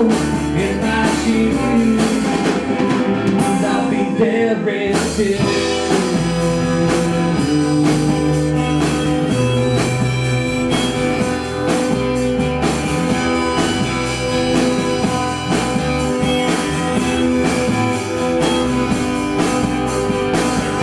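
A live rock band playing a song, with strummed acoustic guitars, an electric guitar and a drum kit. The cymbals drop out briefly about three to five seconds in, then the full band carries on.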